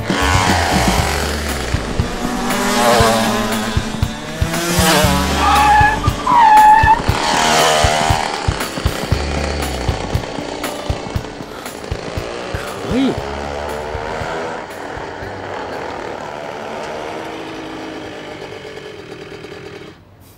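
Go-karts racing past on a track, with whooshing pass-bys and tyre squeal, loudest a few seconds in and fading through the second half. Background music with a steady low beat runs underneath.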